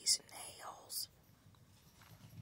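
A woman's soft whisper in the first second, with crisp hissing consonants, then much quieter.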